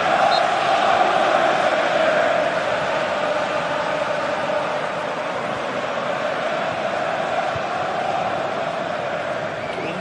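Large football stadium crowd chanting and cheering steadily, easing off slightly over the seconds, in celebration of a goal just scored.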